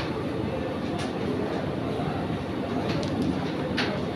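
Carrom striker shot across a carrom board: a few sharp clicks of the striker and wooden carrom men striking each other and the board, at the start, about a second in and near the end, over a steady background din.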